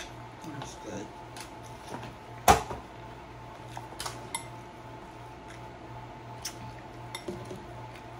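Close-up chewing of a crunchy hard-shell beef taco, with scattered mouth clicks and one sharp knock about two and a half seconds in, over a steady low hum.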